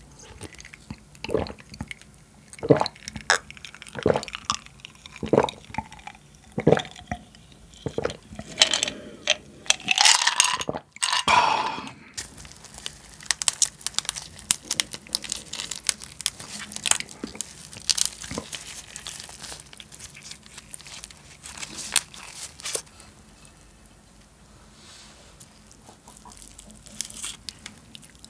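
Close-miked eating sounds: a run of gulps from a drink over the first several seconds, then crunching, cracking and wet clicking as a soy-marinated raw crab (ganjang-gejang) is pulled apart by latex-gloved hands and its meat worked onto rice. There is a louder, noisier stretch about ten seconds in.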